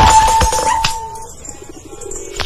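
Comedy film soundtrack: a single high held tone that slides up at first and fades after about a second, with a thud about half a second in as a man falls flat on the ground.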